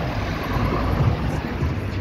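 Road traffic passing close by: cars and a pickup truck driving around a roundabout, a steady mix of engine and tyre noise with a low rumble.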